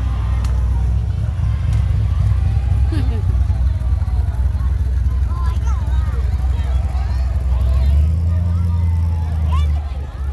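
Low, steady engine rumble of slow-rolling parade vehicles: a red C3 Corvette's V8, then a Ram pickup whose engine grows louder about two seconds before the end and cuts off suddenly. Crowd chatter runs over it.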